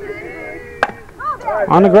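A baseball bat hits a pitched ball with one sharp crack a little under a second in, over background voices. Near the end a man's voice calls out loudly.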